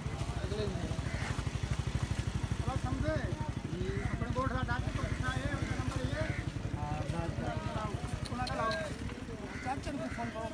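An engine idling steadily, a fast, even low pulsing, with people's voices talking over it.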